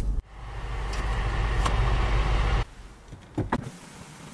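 Electric roof motor of a Land Rover Defender, a power sunroof or roof blind, running steadily for about two and a half seconds and stopping abruptly. Two sharp clicks follow about a second later.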